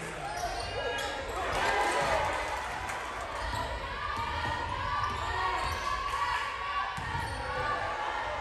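Basketball game sound on a hardwood court: the ball bouncing as it is dribbled, under the voices of players and spectators.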